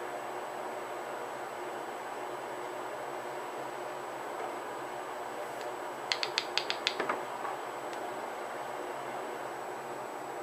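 Steady hiss of recording noise with a thin, high, steady whine. About six seconds in comes a quick run of about seven light, sharp clicks or taps in under a second.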